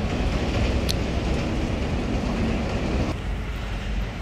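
Steady low rumbling noise, easing slightly about three seconds in, with one brief high squeak just before one second.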